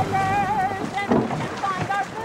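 A woman singing a song aloud, holding long wavering notes one after another.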